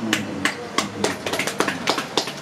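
A small group of people clapping: sharp, uneven claps, several a second.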